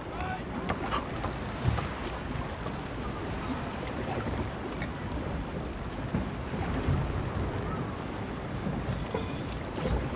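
Steady ambience of a wooden sailing ship at sea: water washing against the hull and wind, with a few faint knocks.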